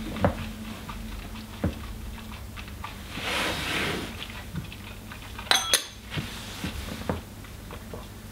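A stemmed glass whisky tasting glass tapping and clinking against a table and bottles as it is handled and set down, with a sharper double clink that rings briefly a little past halfway. A soft breathy hiss comes in the middle.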